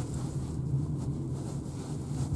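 Cabin noise of a Renault ZOE electric car being driven on a wet road: steady tyre and road rumble with a low, even hum and no engine note.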